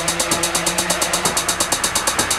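Bass house track in a build-up: rapid, even pulses about eight or nine times a second under a held synth note.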